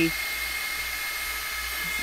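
Handheld hot air blow brush running: a steady whine from its fan motor over the hiss of blowing air.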